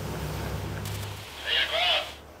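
Steady low drone of a sportfishing boat's engines running under way, which stops abruptly a little past halfway, followed by a brief voice near the end.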